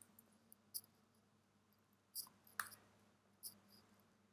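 Faint computer keyboard keystrokes: about six separate short clicks, in loose pairs, over near-silent room tone.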